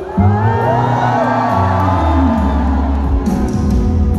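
Live band music at an outdoor concert, with the full band and heavy bass coming in about a quarter second in. Audience cheering and whooping rise over it for the first couple of seconds.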